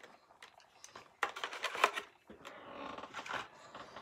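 Plastic blister packaging of a carded diecast car being pried open and the car pulled out: scattered clicks and crackles, busiest between about one and two seconds in, then a softer rustle.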